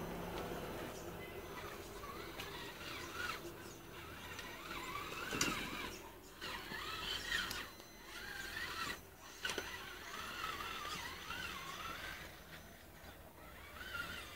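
Traxxas Summit 1/10 electric RC truck's motor and gear drivetrain whining as it crawls over rocks, the pitch rising and falling with the throttle in short bursts with brief pauses.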